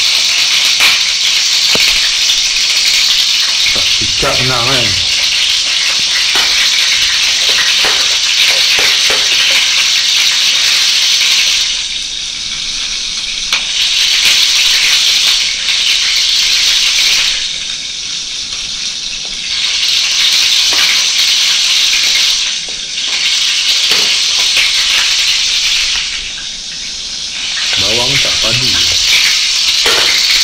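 Cencaru (torpedo scad) frying in hot oil in a pan: a loud, steady sizzle that eases off a few times and swells back. Light knife taps on a cutting board come through it as shallots are sliced.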